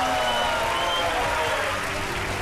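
Arena crowd applauding and cheering, with a voice calling out in long drawn-out tones over the clapping.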